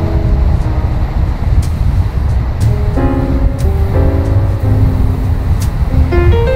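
Background music: changing groups of held pitched notes over a dense low rumble, with a light sharp hit about every two seconds.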